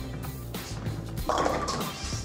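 Background music with a steady low beat, over a bowling ball rolling down a wooden lane; about a second and a quarter in, a burst of clatter as the ball reaches the pins.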